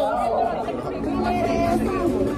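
People talking, with unclear voices and chatter mixed together.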